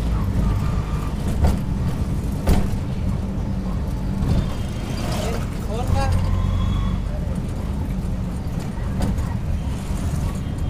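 Auto-rickshaw's small engine running steadily with road noise, heard from inside the open-sided cab. There are two sharp knocks, about a second and a half and two and a half seconds in.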